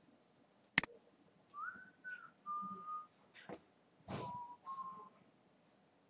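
A person whistling a few short, steady notes, each lower than the one before. There is a sharp click about a second in.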